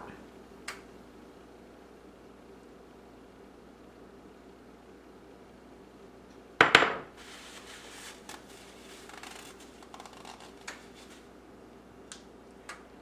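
Thick coconut-milk and brown-sugar sauce pours faintly from a glass bowl into a glass baking dish. About six and a half seconds in there is one sharp knock of glass dishware, the loudest sound. A few light clicks and scrapes follow.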